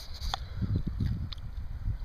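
Low, uneven rumble on the microphone, with two faint clicks, about a third of a second in and a little past a second in.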